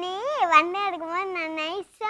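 A young girl's voice in one long, drawn-out, wavering whine of about two seconds, high-pitched and rising early before it wobbles.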